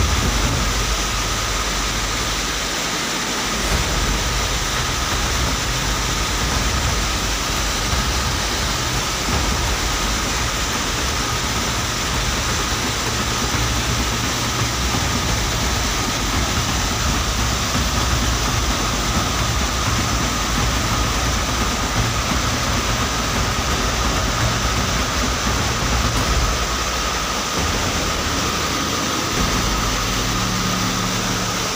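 Muddy flash-flood water rushing steadily, a loud constant noise with no let-up.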